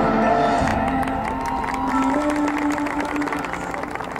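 High school marching band playing its field show: held brass and woodwind chords over percussion strikes, the held notes shifting pitch about two seconds in.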